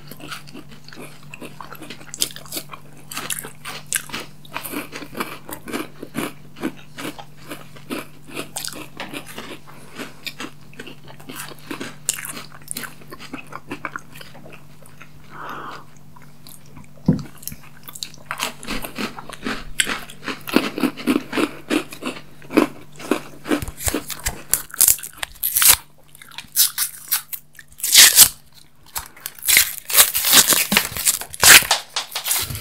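Close-miked biting, crunching and chewing of chocolate candy bars and wafer-and-cookie treats, many small irregular crunches, over a faint steady hum. Near the end come louder, sharper crinkles and tearing as candy wrappers are opened.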